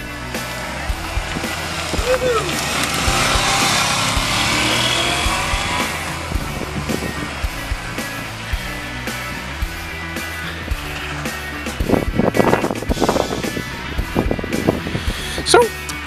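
Honda Shadow V-twin motorcycle riding up and passing close by, its engine loudest a few seconds in and then fading as it rides away; it is running well. Background music plays under it.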